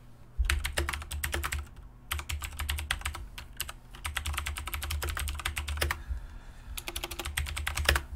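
Typing on a computer keyboard: quick runs of keystrokes with short pauses about two seconds in and again around six seconds.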